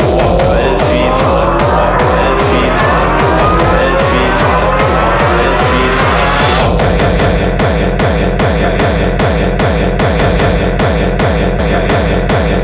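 Hardcore techno with a fast, steady kick drum. A rising synth sweep builds over the first six seconds or so, then cuts off suddenly and the track drops into a harder, pounding section.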